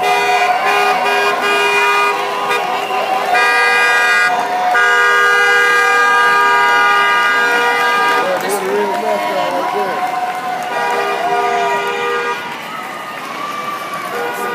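Vehicle horn honking in several long, steady blasts, one held for a few seconds, with voices calling out in the gap between blasts.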